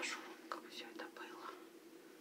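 A woman whispering for about a second and a half, then stopping, over a steady low hum.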